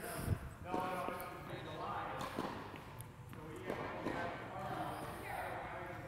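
Indistinct voices talking in a large, echoing indoor tennis hall, with a soft thump about a third of a second in.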